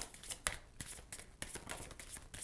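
A deck of oracle cards being shuffled by hand, heard as soft, irregular clicks and slides of card against card.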